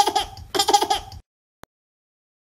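Laughter in two short bursts, cutting off a little over a second in.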